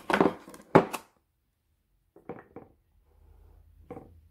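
A perfume bottle being lifted out of its wooden presentation box and handled: a few sharp knocks and taps in the first second, then a couple of softer clicks about two seconds in and another near the end.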